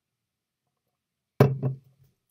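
A drinker finishing a sip of beer and lowering the glass: a sudden sharp sound about one and a half seconds in, then a second, shorter one a quarter of a second later, each with a brief low after-tone.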